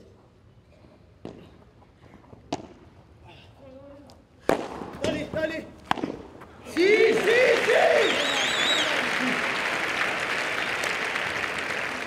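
Padel ball being hit back and forth in a rally, a few sharp knocks a second or two apart. About seven seconds in, a crowd breaks into loud, sustained cheering, shouting and whistling.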